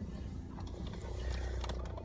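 A car's low, steady cabin rumble from the engine and running gear, heard from inside the car.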